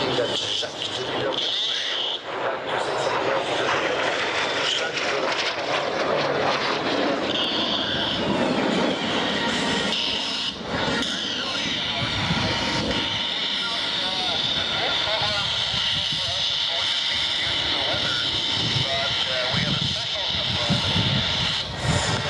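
Aero L-39 Albatros jet trainers flying overhead: continuous jet engine noise with a high whine. The whine comes and goes in the first few seconds, then holds steady from about eight seconds in.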